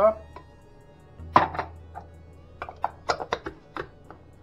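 Sharp plastic clicks and knocks as a food processor's plastic bowl and lid are handled and fitted, with almonds shifting inside. The loudest knock comes about a second and a half in, followed by a run of lighter clicks, over a steady low hum.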